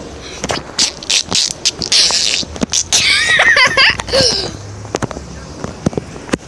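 A young child's high, wavering wordless vocal sounds close to a phone microphone, about three seconds in, with a breathy hiss just before. Clicks and knocks from the phone being handled throughout.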